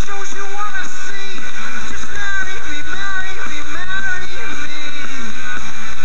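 Live rock band playing loudly, with electric guitars and drums; a steady low bass note comes in about two seconds in.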